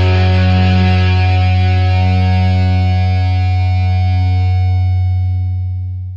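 Final held chord of a rock song on distorted electric guitar over a low bass note, ringing out and fading away near the end.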